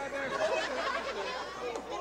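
Crowd of spectators chattering, many overlapping voices at once.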